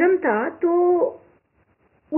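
Speech only: a woman talking for just over a second, ending on a drawn-out vowel, then a pause of near silence.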